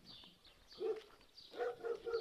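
A dog barking a few short, faint barks.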